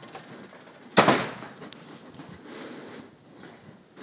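Objects on a cluttered garage shelf being rummaged through by hand, with one sharp knock about a second in as something is bumped or picked up, then quieter handling sounds.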